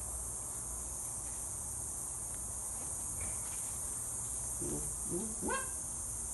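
A steady, high-pitched chorus of insects at dusk, with a low rumble beneath it. Near the end a brief rising vocal sound from a person cuts in.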